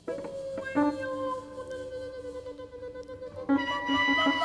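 Live jazz: a woman singing one long held note, starting suddenly, with a lower instrumental note coming in under it about a second in. The music grows louder and busier near the end.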